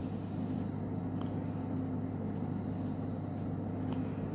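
Steady low hum with a faint background hiss, and two faint clicks, one about a second in and one near the end.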